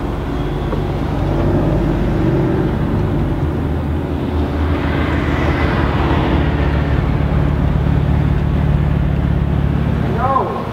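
Mercedes-Benz SLS AMG's 6.2-litre V8 running with a low, steady rumble. About five seconds in, the car drives past close by, and the engine and tyre noise swells and then fades.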